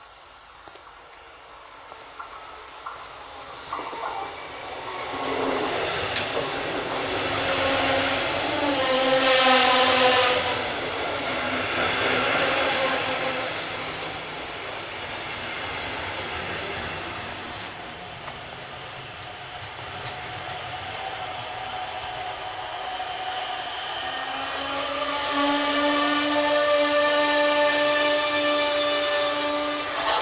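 Passenger train passing close along the platform: the rumble of wheels on rail builds over the first few seconds and peaks about ten seconds in, with a whining tone. A steady whine rises over the running noise for the last five seconds.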